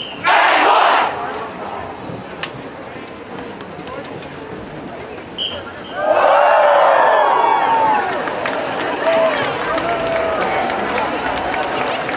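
Crowd cheering and yelling: a short loud burst of shouting just after the start, a lower din of voices, then a bigger swell of many voices cheering about six seconds in that carries on.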